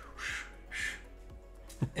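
A man imitating with his mouth the whoosh of a camera-car arm's hydraulic pistons as they work under hard accelerating and braking: two short breathy hisses in the first second, then a brief laugh near the end.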